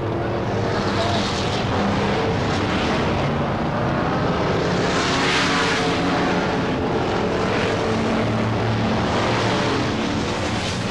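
Several V8-powered dirt-track Sportsman stock cars (350 Chevys and a big-block Mopar) running hard around the oval in a continuous engine drone, swelling loudest as the pack passes nearest about five seconds in.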